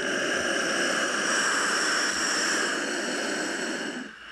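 A long, loud hissing noise with a faint steady whine in it, swelling up and then cutting off suddenly.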